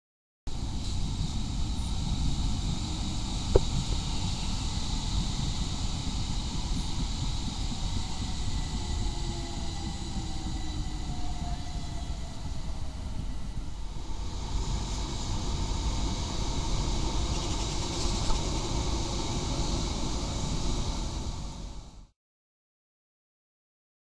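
London Overground Class 378 electric train running past on an elevated line: a steady rumble of wheels on rails, with a faint whine falling in pitch in the middle. One sharp click comes about three and a half seconds in.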